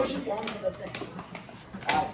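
Indistinct chatter of several voices in a room, with a light click about half a second in and another near the end.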